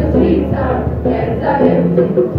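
A group of boys and girls singing together in chorus, accompanied by an acoustic guitar.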